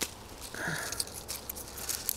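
Shrub leaves brushing against the microphone, making irregular small crackles and rustles.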